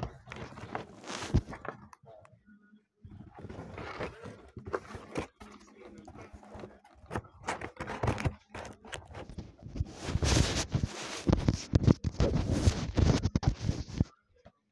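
Phone being handled close up: irregular rustling, scraping and knocking as the microphone is rubbed and covered, heaviest near the end.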